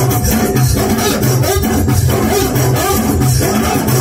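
Live Moroccan chaabi band music played loud through a PA, with a steady beat and a pulsing bass.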